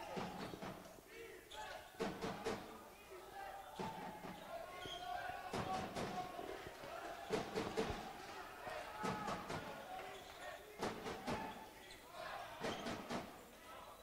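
A handball being bounced and struck on the wooden floor of an indoor sports hall, a string of irregular sharp thuds that ring briefly in the hall, over faint voices.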